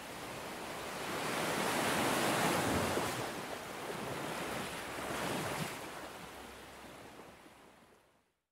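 Small sea waves washing onto a sandy beach, swelling twice and fading out near the end.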